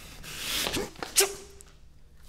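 A person's breathy exhalation swelling and fading, with a brief grunt in it, then a single sharp tap just after a second in and a short hummed sound.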